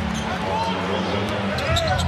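Basketball game sound from the arena floor: steady crowd noise with a basketball being dribbled on the hardwood court.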